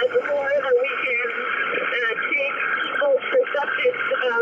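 A woman speaking through a full-face diving mask, her voice thin and radio-like with the highs and lows cut off.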